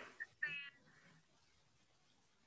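A single short, faint, high-pitched voice-like call about half a second in, then near silence on the call line.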